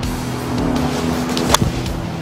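Golf club striking the ball off the tee: one sharp click about one and a half seconds in, over background music.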